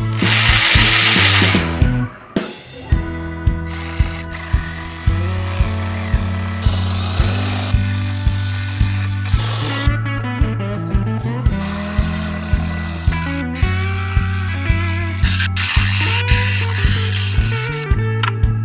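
Background music with a steady beat and bass line, with a Black & Decker KS701PE compact orbital jigsaw running under it in stretches as its blade cuts a curve through a wooden board.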